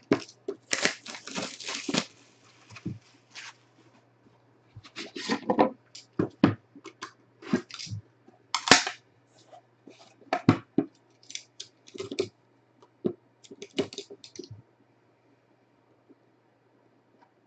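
Hands unwrapping and handling a sealed trading-card box: a run of irregular tearing and rustling of packaging with light knocks, which stops a little before the end.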